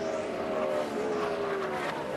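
NASCAR Xfinity Series Ford Mustang race car's V8 engine passing by at full speed, a steady drone that slides slowly down in pitch as it goes by.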